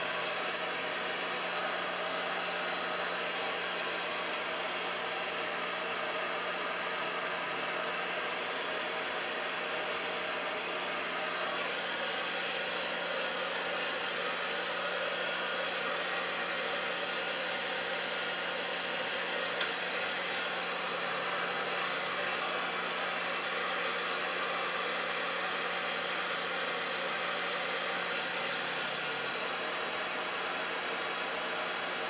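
Handheld hair dryer running without a break, drying long wet hair: a steady rush of air over a constant low motor hum. The airflow's tone shifts a little about twelve seconds in.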